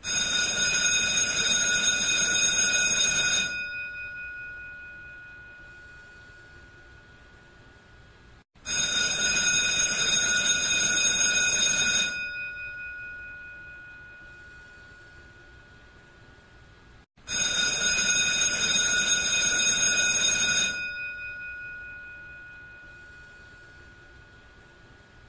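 An electric bell rings in three bursts of about three and a half seconds each, spaced roughly eight and a half seconds apart. After each burst stops, its ring fades away slowly.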